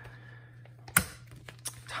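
Clicks and taps of hands handling the plastic sleeve pages of a photocard ring binder: one sharp click about a second in, then a few softer ticks.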